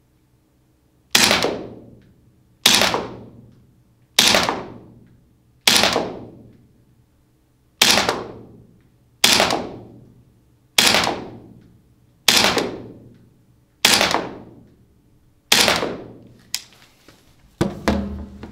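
Lambda Defence GHM9-G gas blowback airsoft carbine firing ten single shots, about one every second and a half. Each shot is a sharp crack of the gun cycling, followed by a short echo dying away in the room. A few light clicks come near the end.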